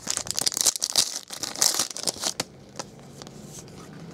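Foil wrapper of a trading-card pack being torn open and crinkled: a dense crackle for the first two seconds or so, then fainter scattered rustling.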